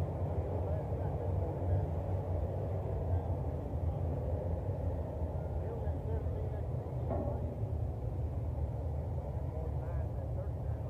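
Dirt late model race cars' V8 engines running off the pace as the field circles under caution, a steady low rumble with no hard revving.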